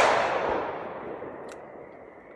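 The echo of a single gunshot, fired just before, rolling away and fading over about a second and a half, with a faint click about a second and a half in.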